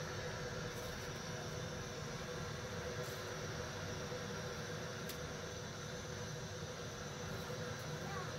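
Steady background hiss and low rumble with a faint constant hum, and a couple of faint clicks.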